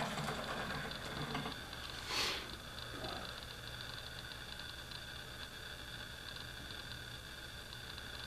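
Quiet room tone: a steady low electrical hum under a faint high whine, with one short breathy hiss about two seconds in.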